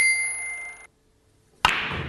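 A single bright bell-like ding rings steadily for under a second and is cut off abruptly. After a moment of silence there is a sharp knock, then room noise.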